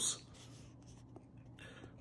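A near-silent pause after a man's voice trails off, with faint room hiss, a soft tick about a second in and a faint scratchy rustle near the end.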